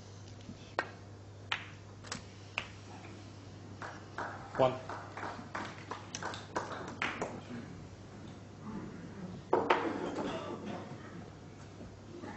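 Snooker balls clicking on the table: a few sharp, separate clicks of cue tip and balls colliding in the first three seconds, then a quicker run of knocks from about four to seven seconds in. A short burst of low voices follows near the ten-second mark.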